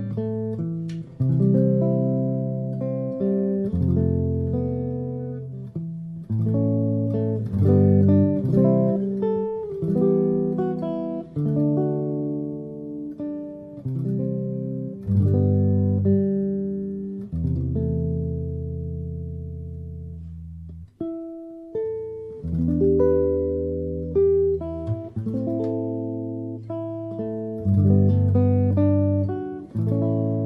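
Archtop jazz guitar played solo with a plectrum: chord-melody playing, with struck chords and low bass notes that ring and fade. The playing breaks off briefly about two-thirds of the way through, then resumes.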